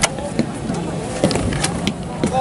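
Several people talking in the background, over a low steady rumble. A sharp click comes right at the start, and a few fainter clicks follow.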